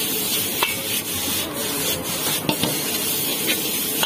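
Metal ladle stirring and scraping noodles around a hot wok, with a few sharp clicks of the ladle against the pan over a steady sizzle of frying.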